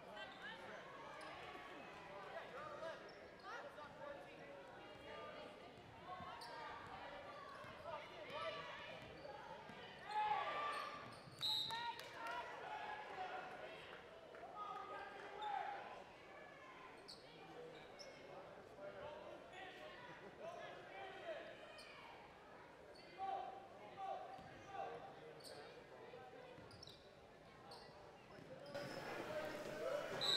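Faint basketball-game sound in a large gym: indistinct voices of players and spectators, with a basketball bouncing on the hardwood floor now and then.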